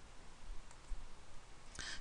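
Quiet room tone with a faint hiss and a few soft clicks.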